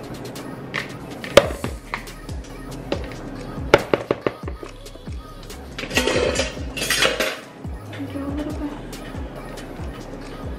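Background music with a steady low beat, over the clinks of a metal measuring cup and spoon knocking against a plastic mixing bowl and cheese tub as ricotta is scooped, with a sharp clink about a second and a half in, a quick run of clinks near four seconds, and a scraping rustle around six to seven seconds in.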